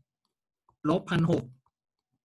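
A man's voice saying a short phrase in Thai, with a couple of faint clicks around it.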